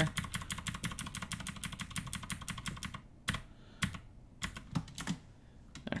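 Computer keyboard keys clicking as code is selected and deleted in a text editor: a quick, even run of keystrokes for about three seconds, then a few separate key presses.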